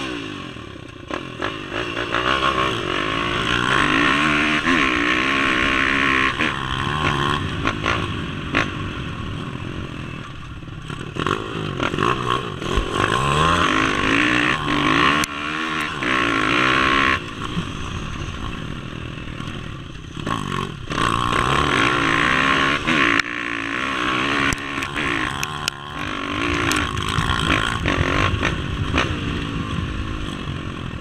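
Dirt bike engine revving up and falling back again and again as the bike is ridden over a rough stubble field, with a rushing noise over the microphone and scattered clattering knocks from the bumpy ground.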